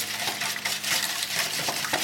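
Wire whisk beating raw eggs in a stainless steel bowl: a quick, steady run of metallic scraping and clinking against the bowl.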